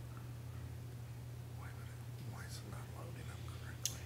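Faint, low murmured talk over a steady low hum, with one sharp click shortly before the end.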